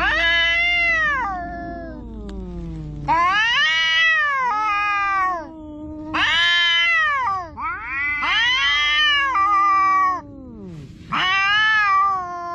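Two cats yowling at each other in a face-off, about five long wavering yowls that rise then fall in pitch, with a low steady note underneath. This is the threatening caterwaul of a standoff between two cats on the verge of fighting.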